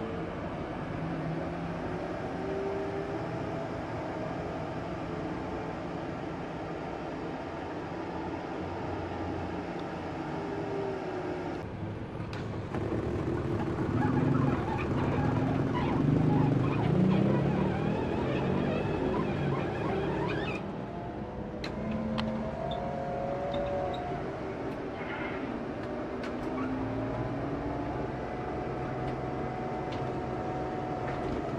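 Cabin noise inside a moving Scania K410IB double-decker coach: a steady engine and road rumble, with the engine note rising and falling as it drives. Between about 13 and 20 seconds in, the noise grows louder and busier.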